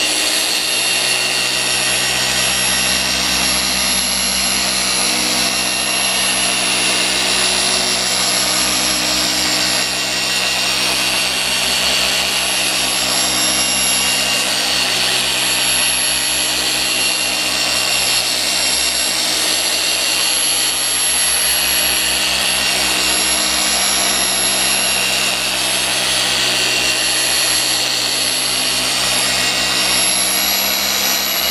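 Rupes LHR21 long-throw random-orbital polisher running at a steady speed with an orange foam cutting pad on car paint: an even whir with a thin high whine over it.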